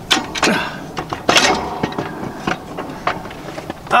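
A handful of sharp metal knocks and clicks as a tractor suspension seat is worked onto its slider bracket. The loudest knock comes about a second and a half in.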